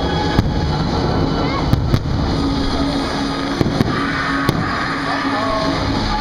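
Aerial fireworks bursting: a continuous low rumble punctuated by about six sharp bangs, two of them in quick pairs.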